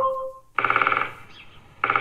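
A Google Home speaker plays a short electronic tone, then a woodpecker drumming sound effect: rapid knocking in two bursts of about half a second each, the second starting near the end. The drumming is used as a knock at the door.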